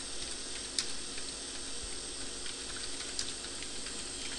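Faint, irregular keystroke clicks on a computer keyboard as a line of text is typed, over a steady background hiss.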